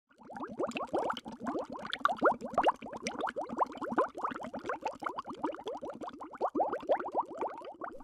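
Underwater air bubbles bubbling: a dense stream of quick blips, each rising in pitch, many a second, starting just after the opening moment.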